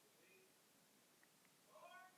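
Near silence: room tone, with a faint brief pitched sound near the end.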